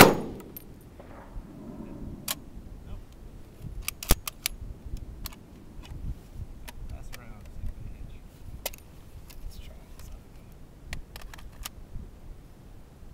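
A single shot from a Bren light machine gun chambered in 7.62x54R right at the start, dying away within half a second. It is followed by scattered light metallic clicks and rattles from the gun being handled, the sharpest about four seconds in.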